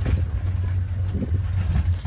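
Open-sided safari vehicle on the move: a steady low rumble of engine and tyres, with the open-air wind noise of the moving vehicle over it.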